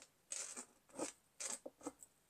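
Faint, short scratching strokes of a Stabilo Woodies chunky colour pencil drawn across collage paper, about five quick strokes in two seconds.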